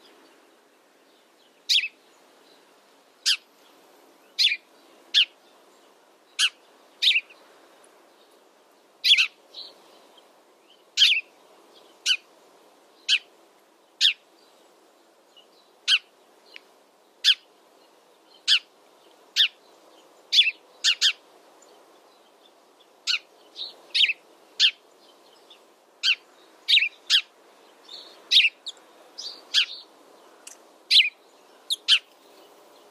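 House sparrows chirping: short, sharp chirps repeated irregularly, about one or two a second, some coming in quick pairs.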